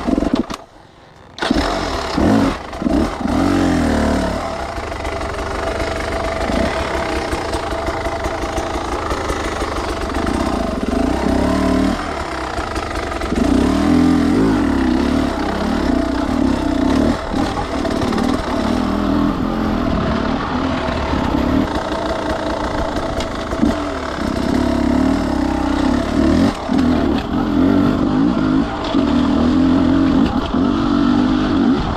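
Beta enduro motorcycle engine running under the rider, revved in repeated short surges of throttle as it works over rock. About half a second in the sound drops away almost completely for about a second, then the engine is heard again.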